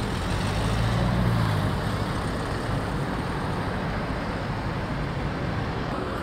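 Road traffic: a motor vehicle's engine hum over a steady low rumble, swelling to its loudest about a second in and then holding steady.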